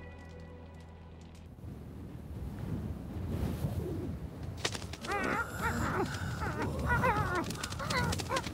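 Soft music fades out, then a rushing desert wind rises. From about five seconds in, wavering high-pitched cries sound over the wind.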